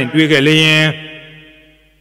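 A Buddhist monk's voice intoning a drawn-out chanted phrase at a steady pitch, trailing off and fading away after about a second.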